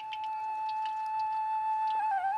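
Background music: a flute holds one long, steady note.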